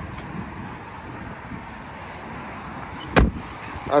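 A car's rear passenger door being shut, one solid thud about three seconds in, over a low steady outdoor background noise.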